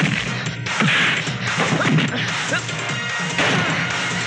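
Film fight sound effects: a rapid run of punch impacts, swishes and crashes as bodies are thrown about.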